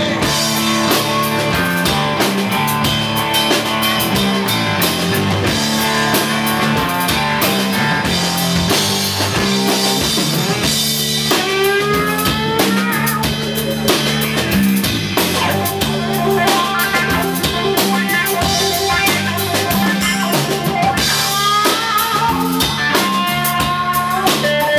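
Live rock band playing an instrumental break: electric guitars over a drum kit and a repeating low riff, with rising guitar slides about halfway through.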